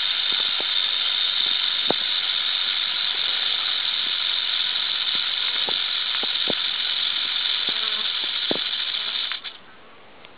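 Timber rattlesnake buzzing its tail rattle in one long, steady, high buzz that cuts off suddenly about nine and a half seconds in. This is the snake's defensive warning.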